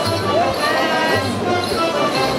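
Live traditional band music for a hobby-horse dance, with sustained melody notes over a steady low beat about once a second.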